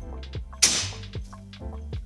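Homemade PVC compressed-air cannon firing once, a little over half a second in: a sudden sharp blast of escaping air that dies away within a moment.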